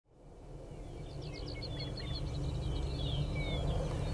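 Outdoor ambience fading in from silence: a steady low rumble with small birds chirping, a quick series of short chirps followed by a few longer falling notes.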